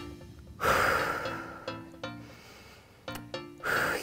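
A woman's heavy breath under exertion: a loud, noisy exhale about half a second in that fades over about a second, then a shorter breath near the end, over quiet background music.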